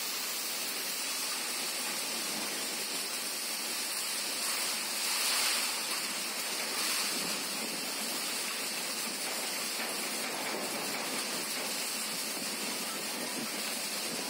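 Heavy downpour in a storm: a steady, even hiss of rain that swells slightly about five seconds in.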